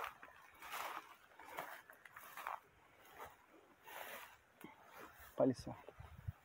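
Tall grass and brush swishing and rustling as a person walks through it, in soft irregular swishes about a second apart.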